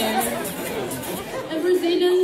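A woman's voice through a microphone in a hall, wordless vocalizing rather than clear speech, ending in one held note near the end, with audience chatter underneath.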